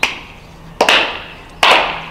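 Hand claps in a slow, steady beat: three claps evenly spaced a little under a second apart, each fading quickly.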